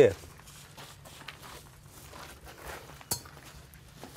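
Footsteps on gravel, with one sharp click about three seconds in.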